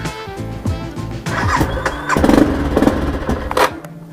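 Motorcycle engine being started and running, louder from about two seconds in, with background music over it.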